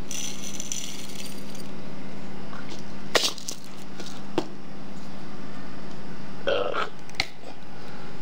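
Salt shaken from a container into a bowl of minced fish, a brief hiss in the first second. A few sharp clicks follow as spice jars are handled, over a steady low hum.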